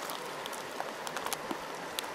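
Steady rushing hiss of a nearby stream, with a few faint crackling ticks scattered through it.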